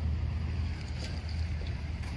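Wind buffeting the phone's microphone: a steady, unsteadily pulsing low rumble, with a faint click about a second in.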